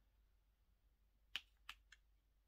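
Near silence broken by three faint, short clicks in the second half: a diamond painting pen tapping drills onto the canvas.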